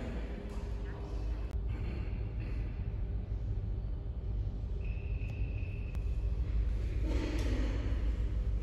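Room tone of an underground metro station: a steady low rumble with faint hum, a short high steady tone about five seconds in, and a louder murmur near the end.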